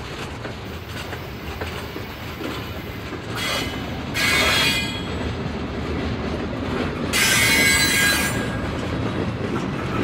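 Freight cars of a CSX train rolling past with a steady rumble of wheels on rail. The wheels squeal loudly twice, from about three and a half seconds in for over a second, and again at about seven seconds for just over a second.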